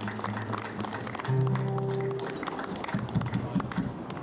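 Small crowd clapping in a scattered round of applause, with a held low note from an acoustic guitar sounding for about a second partway through.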